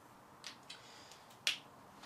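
A short, sharp click about one and a half seconds in, with two fainter short sounds before it, over quiet room tone.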